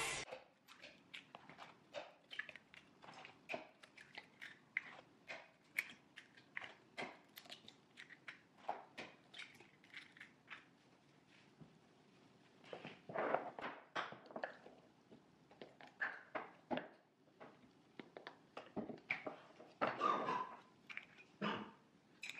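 Faint, scattered clicks, taps and knocks of pancake batter being prepared at a kitchen counter: eggs cracked and jars and containers handled over a blender cup, with a few louder bursts of handling in the middle and near the end.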